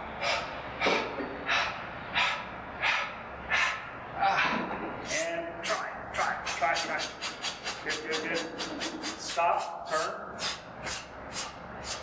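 A man breathing hard and fast through the mouth from the exertion of a high-intensity leg press set. The breaths come about one and a half a second at first, quicken to about three a second in the middle, then slow again, and a few are voiced.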